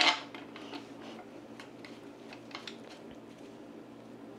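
A few faint, irregularly spaced light clicks and clinks of a metal screw and nut being fitted into the plastic cover flange of a Pentair multiport pool valve.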